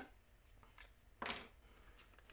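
Mostly near silence, broken by one brief, soft handling noise a little over a second in, from gloved hands handling a small vacuum-sealed plastic bag of paydirt and a knife before cutting the bag open.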